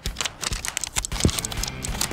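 Rapid, irregular clicks and taps of sticky notes being peeled off their pads and slapped onto faces, over background music.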